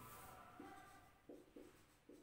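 Faint squeaks of a marker pen writing on a whiteboard, a few short strokes.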